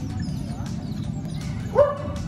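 A family of smooth-coated otters chirping and squeaking as they move, with one louder, short pitched call near the end.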